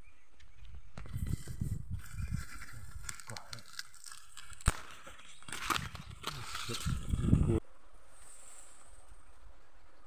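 Tall grass rustling and crackling against a handheld phone and clothing as someone pushes through it, with rumbling handling knocks on the phone and one sharp click about halfway. It stops abruptly about three quarters of the way through, leaving a faint steady hiss.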